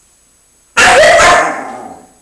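Siberian husky letting out one loud, sudden grumbling bark about three quarters of a second in, which tails off over about a second.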